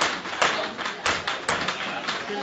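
A small hammer tapping a wooden wedge held against a person's back in Thai hammer massage: about six sharp knocks at an uneven pace, with a quick run of strokes in the second half.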